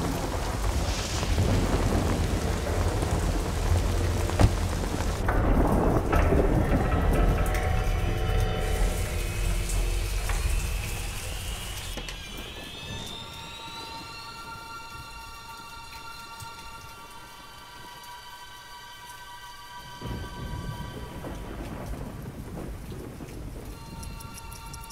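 Heavy rain with deep rumbling thunder for about the first half, then dying away. A rising electronic tone then leads into steady, sustained synth music notes.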